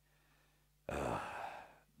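A man's sigh, a long breathy exhale close to a headset microphone, starting about a second in and lasting about a second.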